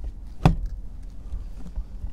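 A single sharp knock about half a second in: a Toyota Prius steering wheel hub being seated onto the splined steering shaft.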